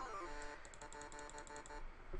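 A low synthesizer note from NanoStudio's Eden synth, harp waveform through a low-pass filter, pulsing quickly and evenly as a beat-synced sine LFO sweeps the filter: a dubstep wobble being dialled in. It slides down in pitch at the start, then holds and cuts off shortly before the end.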